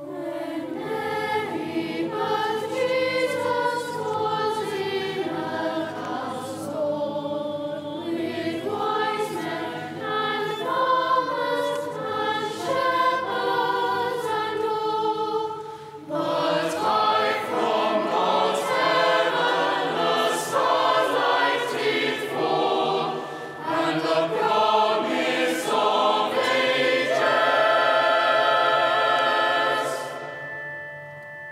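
Church choir of children's and adult voices singing a carol in parts. There is a brief pause between phrases about halfway through, and the piece closes on a long held chord that stops near the end.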